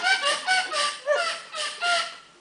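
A man's voice at the microphone making a run of short, nasal, pitched vocal sounds in place of words, about six in two seconds, each bending in pitch, fading out at the end.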